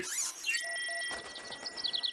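Electronic scanning sound effect: a quick sweep, then a steady high tone with a few short beeps, followed near the end by a small bird's rapid chirping, both from an animated show's soundtrack.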